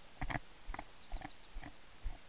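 Footsteps crunching through dry leaf litter at a walking pace, about two steps a second.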